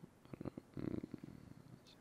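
Faint computer-keyboard keystrokes, a quick run of clicks in the first second, with a brief low rumble about a second in.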